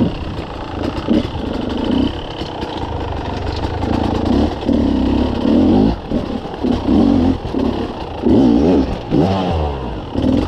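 Beta enduro motorcycle engine revving in repeated throttle bursts, about one a second, as it picks its way over a rocky trail, with the pitch rising and falling near the end. Rocks clatter under the tyres.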